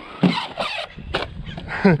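Men laughing in short breathy bursts, with a single sharp click about a second in.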